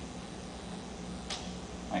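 Room tone with a steady low hum, and one short hiss just over a second in.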